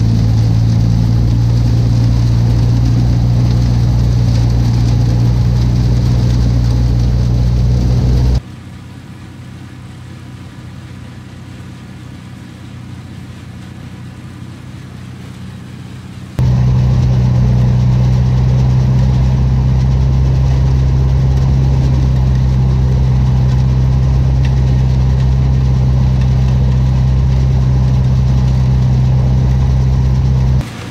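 Farm harvesting machinery engines running at a steady speed, heard as a loud, even hum. About eight seconds in the sound drops abruptly to a much quieter, more distant engine hum, and about sixteen seconds in the loud hum returns just as abruptly.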